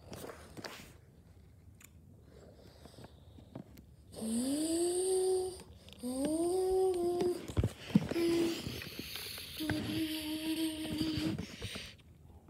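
A person humming several long notes after a few quiet seconds: the first two swoop upward and then hold, and the last is held longest.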